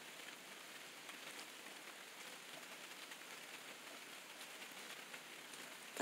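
Light rain falling, a faint steady hiss with scattered drips.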